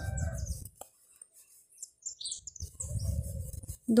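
A few short, faint bird chirps in the middle, set between low muffled rumbles at the start and again near the end.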